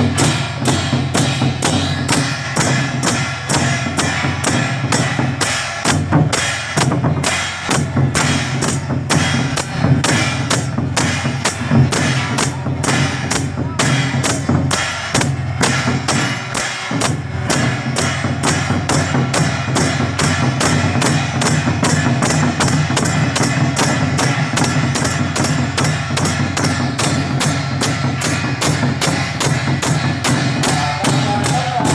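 Procession percussion troupe: red barrel drums beaten together with clashing hand cymbals in a steady, unbroken rhythm, a little under three strokes a second.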